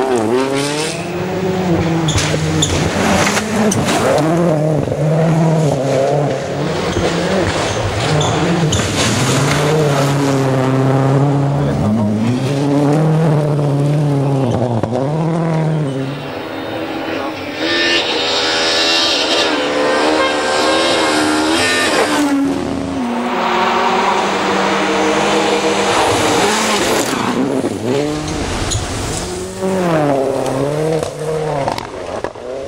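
World Rally Cars' turbocharged four-cylinder engines at full throttle on a gravel stage, several cars passing in turn, the engine note climbing and dropping again and again through gear changes and lifts.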